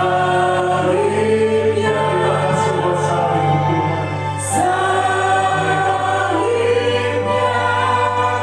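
Worship song sung by voices in long held phrases over a steady keyboard accompaniment, with a fresh phrase starting about four and a half seconds in.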